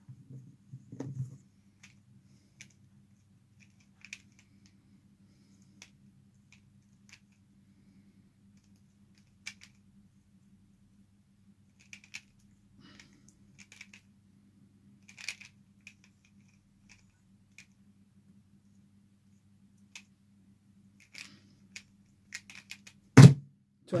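Pyraminx being turned in a speedsolve, with scattered light clicks of its plastic pieces over a faint steady hum. Near the end, hands come down on the speedcubing timer's pads with one loud slap, stopping the timer.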